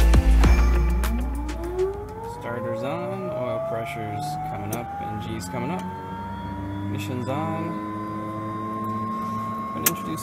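Background music fades out in the first two seconds as the Pilatus PC-12NG's PT6A turboprop begins its start: the starter spins up the gas generator, a whine that rises steadily in pitch and levels off toward the end. A sharp click comes just before the end.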